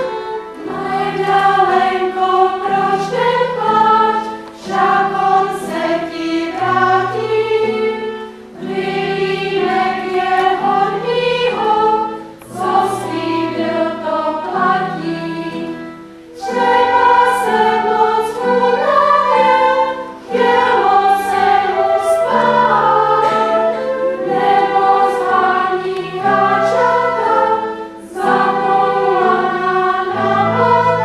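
A women's folk choir singing a song in phrases of about four seconds each, with short breaks between phrases and low held notes underneath.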